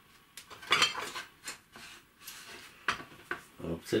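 A metal spoon clinking against a glass mixing bowl as the bowl is handled: a run of sharp clinks and knocks, loudest about a second in.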